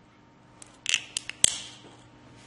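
A handful of sharp plastic clicks and snaps from a small hobby servo being taken apart by hand, its casing and parts pulled loose. The last click is the loudest and trails off briefly.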